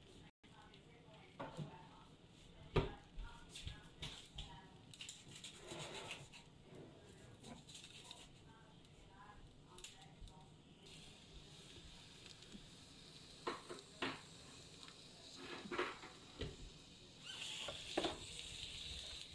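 Ground beef and oil starting to sizzle quietly in an enamelware stockpot, the sizzle setting in about two-thirds through and growing louder near the end. A few clinks and knocks against the pot.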